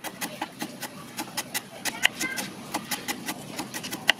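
Kitchen knife chopping lemongrass on a wooden cutting board: quick, even knocks of the blade on the board, about five a second.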